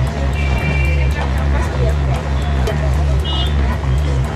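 Busy market street: crowd voices mixed with music, over a heavy low rumble. There are two brief high horn toots, one shortly after the start and one near the end.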